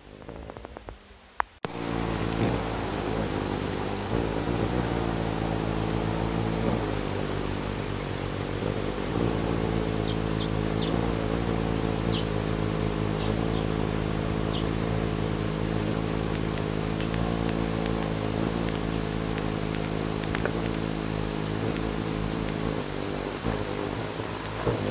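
Hummingbird wings humming as several birds hover at a feeder: a steady low buzz that starts abruptly after a sharp click near the beginning, its pitch wavering now and then. A few short high hummingbird chirps come in around the middle.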